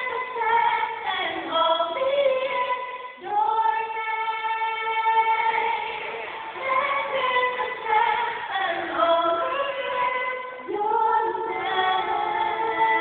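A small vocal group singing a gospel song in close harmony, several voices together, with one long held chord about three seconds in.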